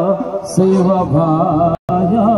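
A man singing into a microphone through a PA, holding long, wavering notes, with electronic keyboard accompaniment. The sound cuts out briefly near the end.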